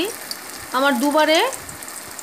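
Soya chunk koftas frying in hot oil in a pan: a steady sizzle of bubbling oil.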